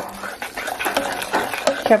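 A metal spoon stirring sauce in a stainless steel pot, with wet sloshing and short scrapes and clinks against the pot. A woman's voice begins near the end.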